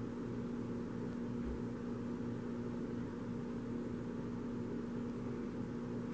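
Steady low hum with a faint even hiss: room tone, with no other event.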